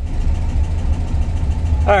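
Air-cooled VW Beetle flat-four on dual Weber IDF carburettors idling steadily, a low even rumble. The idle jets have just been cleared of debris and the idle has settled.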